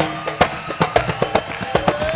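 Live band playing an instrumental passage of an Arabic pop song: a steady drum and percussion beat, with a melody line sliding upward near the end.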